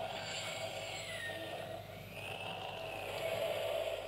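Buzz Lightyear toy's electronic rocket-liftoff sound effect played through its small speaker: a steady whooshing rush with a whine that dips, then rises and falls, stopping at about four seconds.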